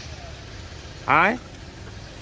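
A man's voice gives one short, loud rising call to a dog about a second in, over a steady low hum of street traffic.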